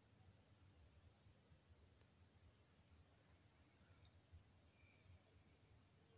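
Faint, evenly spaced high chirps of an insect, about two a second, with a short pause near the end.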